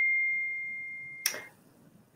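Electronic notification ding on a video call: a single high, pure tone that fades away over about a second and a half.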